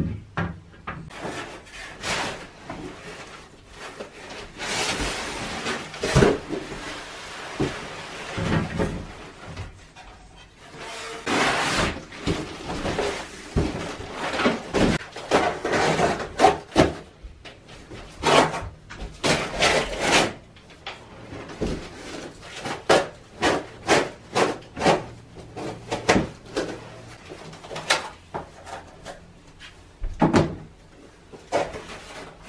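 Flat-pack cot bed parts being handled: wooden panels and a cardboard box knocking and scraping against each other, with stretches of rustling. Short knocks come quicker in the last third, roughly one or two a second.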